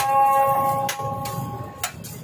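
Metal spatula tapping on a steel griddle: three sharp clicks about a second apart, over steady ringing tones that stop at the last click near the end.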